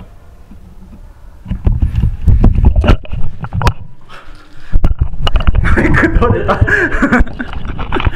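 Low bumps and clicks of the camera being handled close to the microphone, then a man's voice and laughter right at the microphone in the second half.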